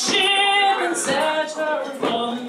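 A woman singing a traditional ballad solo, holding long notes that glide between pitches.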